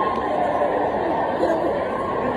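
A crowd of students chattering in a large hall, many overlapping voices with no one voice standing out.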